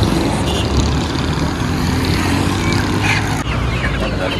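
Road traffic passing close, with the steady drone of a motorcycle engine.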